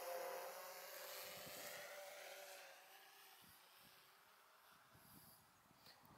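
Faint hum of a DJI Phantom 4 Pro V2 quadcopter's propellers, fading away as the drone flies off forward, gone about three seconds in.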